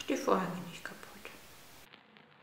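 A woman speaking softly for about a second, words that cannot be made out.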